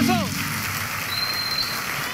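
A voice trailing off on a falling pitch, then a steady hiss of background noise with a faint high whistle-like tone in the middle.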